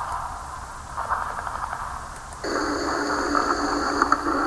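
Opening of a song: thin, crackling hiss like radio static. About two and a half seconds in, a louder layer joins with steady high whistling tones.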